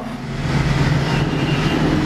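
A steady rushing noise with a low hum underneath, holding level throughout.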